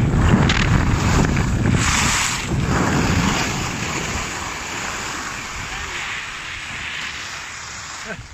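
Wind buffeting the microphone during a ski descent on a groomed piste, with skis hissing over the packed snow. The noise dies down steadily as the skier slows at the run-out.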